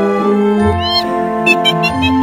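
Spooky theme background music of sustained, organ-like chords. About a second in, a short rising high call sounds over it, followed by three or four quick high chirps near the end.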